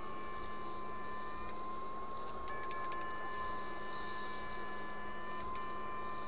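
Electric fish shocker (a PDC 8 FET inverter unit) whining steadily with a high electronic tone over a low hum while its electrode is in the water. Its higher overtones cut out and return abruptly a couple of times.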